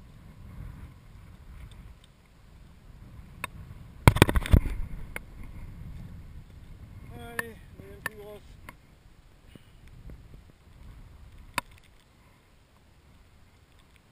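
A brown trout being released by hand into a lake at the bank's edge: a short burst of splashing and knocking about four seconds in as the fish goes into the water, then a few light clicks and water sounds as it is held there, over a low steady rumble.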